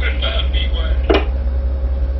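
Steady low rumble of a tugboat's twin engines, with a thin steady hum above it.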